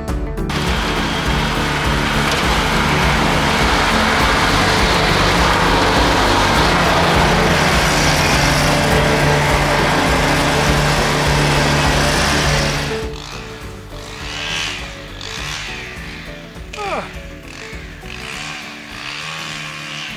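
Riding lawn mower's engine and cutting blades running steadily, cutting off suddenly about 13 seconds in; quieter background music follows.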